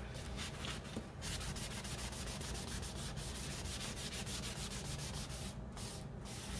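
A wad of paper towel rubbed briskly back and forth over a paper-covered cardboard journal cover, working wet ink into the collage, in quick even strokes several times a second that stop shortly before the end.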